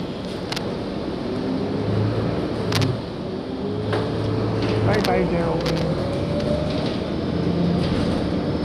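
Inside a 2018 Gillig transit bus under way: the drivetrain runs steadily with a whine that rises in pitch from about three seconds in as the bus gathers speed, while the cabin rattles and clicks.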